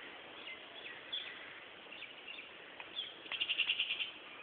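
Small birds chirping faintly over outdoor background hiss, with a quick trill of about eight short high notes near the end.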